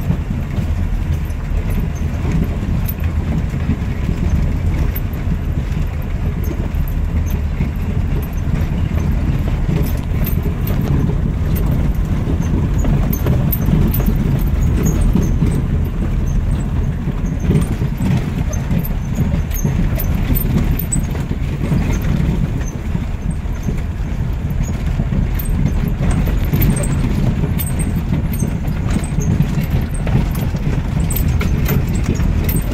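Jeep Wrangler driving slowly over a rough dirt track, heard from inside: a steady low rumble of engine and tyres, with scattered small clicks and knocks as the vehicle jolts over the ruts.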